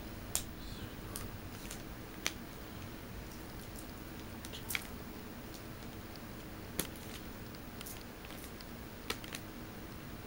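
Trading cards being handled and sorted by hand: occasional light clicks and taps, a second or two apart, over a steady low background hum.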